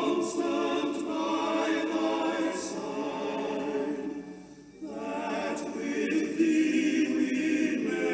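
A choir singing slow, sustained vocal music, with a short break between phrases about four and a half seconds in.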